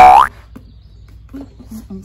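Cartoon 'boing' sound effect: a short, loud tone that glides upward, over in about a quarter of a second.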